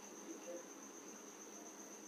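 Near silence: faint room tone with a thin, steady high-pitched whine.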